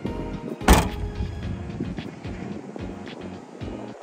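Trunk lid of a 2020 Toyota Camry XSE pulled down and shut by hand, closing with a single loud thunk a little under a second in, over background music.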